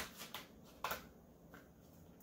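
Faint handling of a deck of oracle cards: soft rustles and a few short card taps and slaps as the cards are shuffled in the hands.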